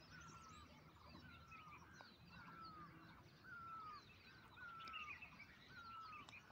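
Faint bird calls: a short, slightly falling call repeated about every half second, with scattered higher chirps over a low background hum.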